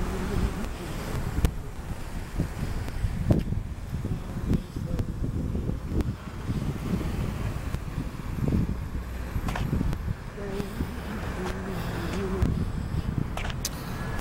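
A city bus and road traffic going by, with wind buffeting the handheld microphone and occasional knocks from handling.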